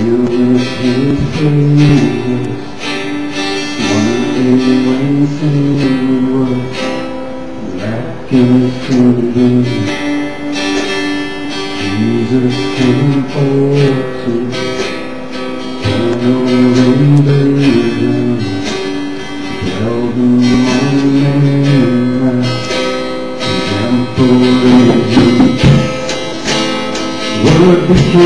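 Acoustic guitar strummed to accompany a slow worship song, with a man singing long held phrases.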